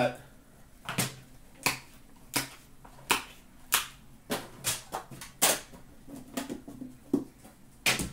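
About a dozen sharp clicks and knocks, spaced roughly half a second to a second apart. They come from metal trading-card tins and a boxed card being handled, opened and set down on a glass counter.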